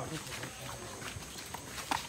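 Footsteps of several people walking, a few scattered irregular steps and scuffs at moderate level.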